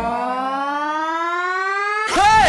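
A single synthesized tone sweeping steadily upward in pitch, with the bass and beat dropped out: a riser building into the next section of the song.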